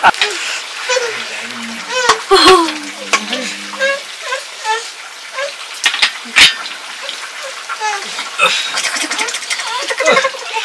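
Cooking at an open wood fire: a steady hiss and sizzle with sharp clicks and knocks from the fire and pots, under soft, scattered voices.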